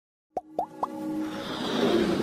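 Animated logo-intro sound effects: three quick rising plops about a quarter second apart, then a swelling whoosh that builds steadily in loudness.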